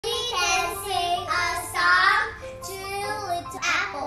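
Two young girls singing a children's song together, in held, gliding notes with short breaks between phrases.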